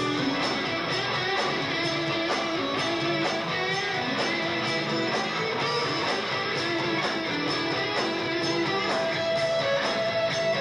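Rock band playing live in an instrumental stretch: electric guitar over bass and drums, with a steady beat of about two strikes a second.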